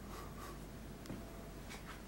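Faint scratchy rustles over low room tone in a small room: two short scrapes right at the start, a light click about a second in, and two more short scrapes near the end.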